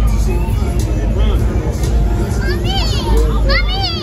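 Crowd chatter over a steady low rumble, and from about two and a half seconds in a small child's high-pitched, wavering squeals.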